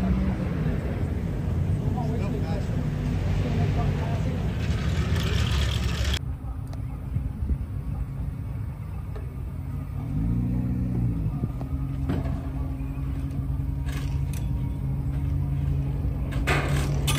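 Car engine idling steadily, with one brief rev that rises and falls in pitch a little after ten seconds. The sound changes abruptly about six seconds in.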